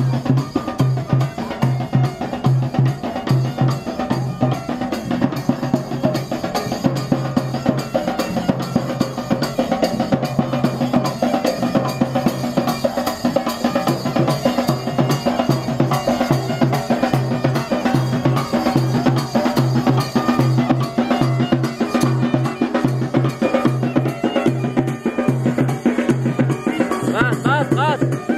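Processional drums beaten with sticks in a steady, fast rhythm, with a deeper drum beat repeating underneath.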